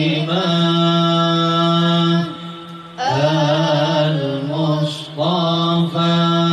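A single voice chanting Arabic devotional verses in long held notes with ornamented turns, in the style of Islamic devotional chanting. There is a short break about two and a half seconds in.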